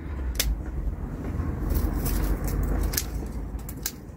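Bypass secateurs snipping dry, woody hardy fuchsia stems: several sharp clicks spread through the time, a cluster of them near the end, with twigs rustling over a low steady rumble.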